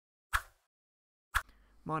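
Two short, sharp pops about a second apart, each dying away quickly, with silence between them; a man starts speaking just before the end.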